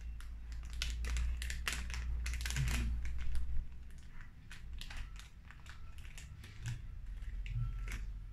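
Plastic packet of fishing tackle being torn open and handled: a quick run of crinkles and crackles, densest in the first few seconds and then sparser.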